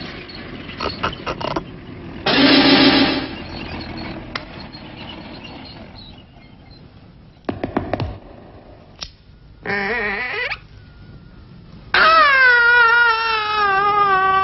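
Cartoon soundtrack effects: scattered knocks and a short loud noisy burst, then a brief wavering pitched tone, and near the end a loud sustained wavering tone that slowly falls in pitch.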